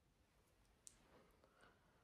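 Near silence: room tone, with one faint short click about a second in and a couple of fainter ticks after it.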